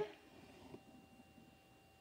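Near silence: quiet room tone with a faint steady electrical hum and a few faint soft taps, as the pencil and ruler are handled on the paper.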